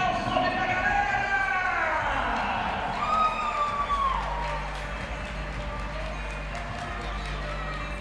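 A man's voice calling out in long, drawn-out words. About four seconds in, background music with a steady beat takes over.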